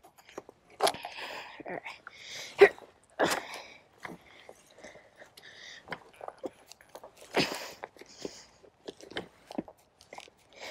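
Irregular rustling and crunching in tall grass with knocks and clunks from an electric trials bike being wrestled about by its rider, the loudest a sharp knock about two and a half seconds in. The rider's breathy grunts and exclamations are mixed in.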